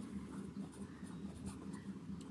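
Pen writing a word on paper: faint, short scratching strokes.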